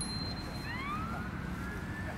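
Distant emergency-vehicle siren: one wail rising in pitch about half a second in, then held high, over a steady low rumble of wind and ambient noise.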